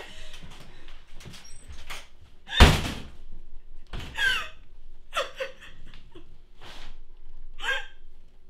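A door shuts hard about two and a half seconds in, the loudest sound here, followed by a lighter knock about a second later. A woman's short, breaking sobs come and go around it.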